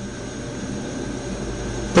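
Steady background noise with a low rumble that grows a little louder toward the end.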